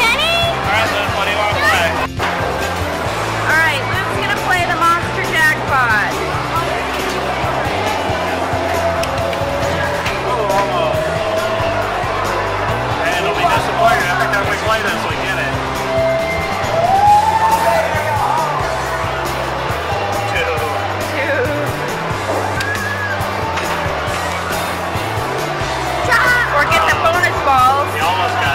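Busy arcade din: game machines' music with background voices, and a few electronic sound effects gliding in pitch.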